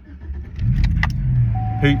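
A car engine starting about half a second in and settling into a steady low idle, with a couple of light clicks like keys around a second in. A thin steady tone joins past the midpoint.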